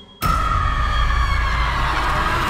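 Trailer sound-design hit: a sudden loud impact a fraction of a second in, followed by a deep rumble and a high ringing tone that slowly sinks in pitch.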